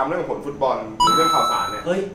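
A single bell-like ding about a second in: a clear ringing tone that holds steady for under a second and then cuts off abruptly, over a man's voice repeating "ha ha".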